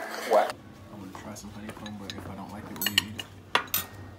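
Metal cutlery clinking against a plate and tabletop: a few sharp clinks near the end, one ringing briefly.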